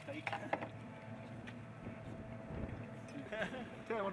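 Faint steady outdoor background with a few light knocks in the first half-second, then men's voices starting near the end.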